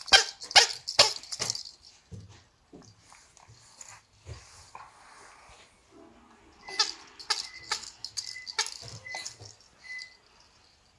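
A baby's plush handheld rattle toy shaken in quick bursts, a cluster of sharp rattles in the first second and a half and another from about seven seconds in.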